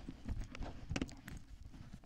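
Handling noise from a motorcycle helmet: irregular light clicks, taps and rubbing as hands work at the helmet's chin strap and liner.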